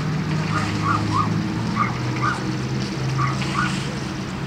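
Steady low hum of a vehicle engine or traffic, with short high chirps scattered over it, about seven in four seconds.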